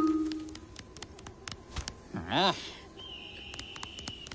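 Sparse animated-cartoon soundtrack: a musical note dies away at the start, a short cartoon vocal sound rises and falls in pitch a little past halfway, and a thin, steady high tone holds through the last second.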